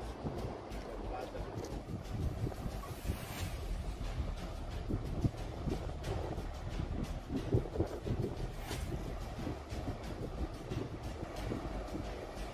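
Wind buffeting the microphone over the wash of small waves on the shore, a rough, fluctuating rumble with a few brief sharper peaks.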